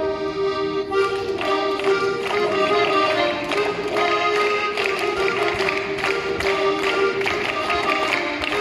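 Live traditional folk dance tune, an accordion holding the melody, with a steady tapping percussion beat that joins about a second in.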